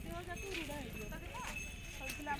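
Indistinct voices of people talking at a market stall, with a faint steady high-pitched tone coming in about half a second in.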